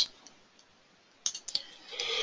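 Computer mouse button clicks: a quick cluster of three or four clicks about a second and a quarter in, between near-quiet room tone.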